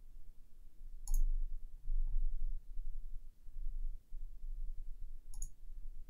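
Two computer mouse clicks about four seconds apart, over a low steady rumble.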